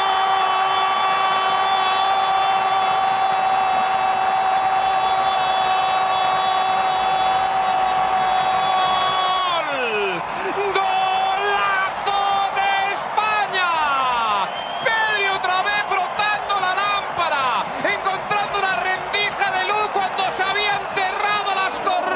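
A television football commentator's long, held goal call at one steady pitch for about nine and a half seconds, dropping off and giving way to excited shouting that slides up and down. A stadium crowd cheers underneath.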